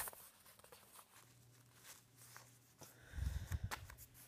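Quiet handling sounds as a layer of modelling clay is pulled off a figure's ear on paper. A run of soft, muffled knocks comes about three seconds in.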